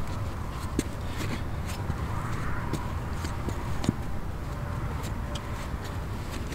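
Boots shifting on a small metal tree-stand platform strapped to a tree trunk: scattered light clicks and scuffs as weight moves about, over a steady low rumble.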